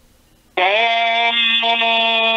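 A single voice holding one long sung note at a steady pitch, starting about half a second in after a short quiet gap.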